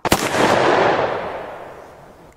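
A single revolver gunshot, sharp at first, then a long echoing tail that fades away over about two seconds. The shot is a sound effect laid over the firing of a wooden toy revolver.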